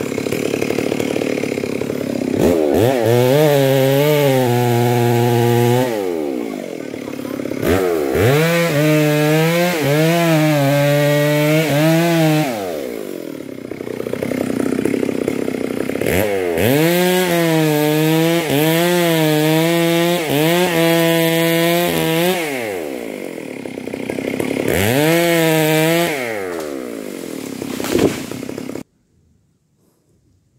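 A chainsaw revving to high speed and dropping back to idle in four long bursts, its pitch wavering while held at high revs. The sound cuts off suddenly near the end.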